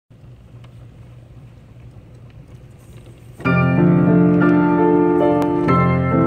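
AMPICO reproducing player piano starting a roll. Its mechanism runs with a quiet low hum and faint ticks for a little over three seconds while the blank leader winds past. Then the piano comes in suddenly and loudly with a chord and goes on playing held notes.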